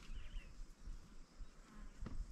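Faint insect buzzing over a low, uneven rumble, with a few faint high chirps about a quarter of a second in.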